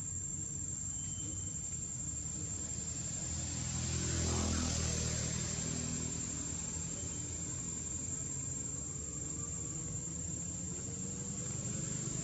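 Outdoor background sound: a steady high-pitched insect drone over a low rumble that swells briefly about four seconds in.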